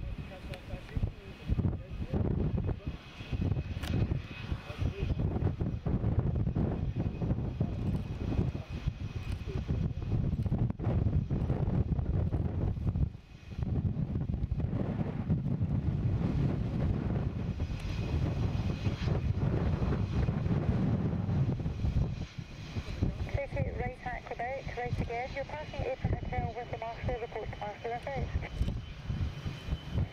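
The twin General Electric F404 jet engines of a McDonnell Douglas CF-18 Hornet run with a low rumble as the fighter rolls along the runway, with gusts of wind on the microphone. A voice talks over it in the last several seconds.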